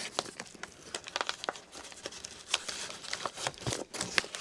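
Kraft paper mailer bag crinkling in irregular crackles as a plastic sample container is slipped inside and the bag is closed.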